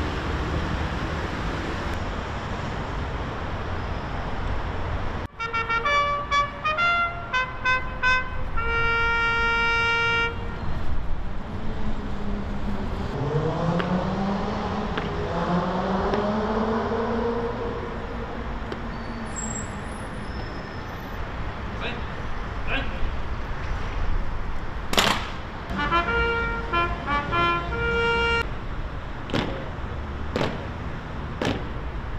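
Honour guard ceremony: a brass signal call of stepped, held notes starts about five seconds in, after a steady background rumble cuts off, followed by a long drawn-out shouted command rising and falling. After a sharp knock, a second short brass call sounds, and several sharp clicks of rifle drill come near the end.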